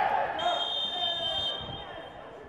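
A referee's whistle blown in one long blast starting about half a second in, stopping play for a foul. Players shout as it begins.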